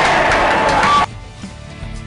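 Background music under a football crowd cheering a goal; the crowd noise cuts off suddenly about a second in, leaving the music alone and much quieter.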